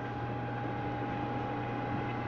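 Air-conditioning circulation pump for a yacht's chilled-water heat-pump system running: a steady hum with a steady higher tone over it.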